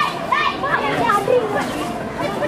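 Several high-pitched women's and girls' voices shouting and calling over one another during a women's kabaddi match.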